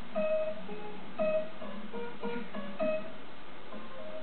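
Acoustic guitar playing a slow melody of single plucked notes, about two a second, over a low sustained accompaniment.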